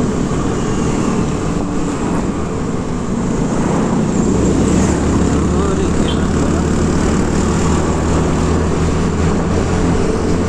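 Riding noise of a Hero scooter on the move: its small engine running under a steady rush of wind and road noise, with a low drone that grows stronger about halfway through.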